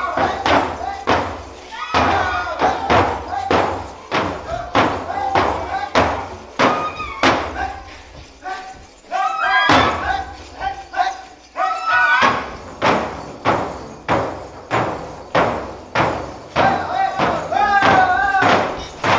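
Large hand-held frame drums beaten in a steady rhythm of about two strokes a second, under rhythmic chanted calls from a group of voices. A little past the middle the drumming thins out briefly while the voices carry on.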